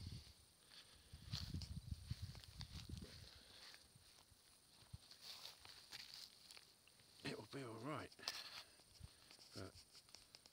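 Faint rustling and footsteps in dry grass and undergrowth, with a brief murmured voice about seven seconds in.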